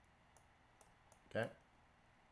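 A few faint, sharp clicks of a computer mouse while a line is drawn on an on-screen chart, with one short spoken word about one and a half seconds in.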